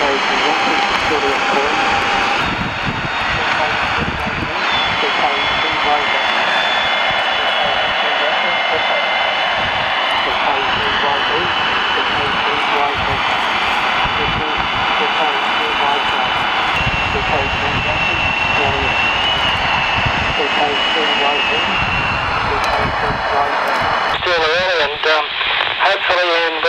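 Weak AM voice on the 160-metre band coming through the speaker of a National Panasonic transistor radio converted to 160 metres, half buried in steady hiss and static, with a thin whistling tone that glides in pitch now and then. About two seconds before the end it cuts to a clearer FM voice from a Pofung handheld transceiver.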